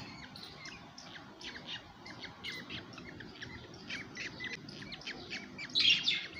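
Baby budgerigars chirping: a steady run of short, quick chirps, several each second, with a louder flurry near the end.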